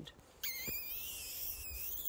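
A drawn-out, high-pitched squeaky kiss blown through puckered lips. It starts about half a second in, wavers slightly in pitch and lasts about a second and a half.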